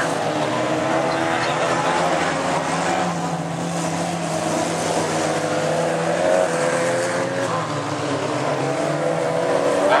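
Several racing car engines running on a dirt track, their pitch rising and falling slowly as the cars accelerate and lift off through the corners.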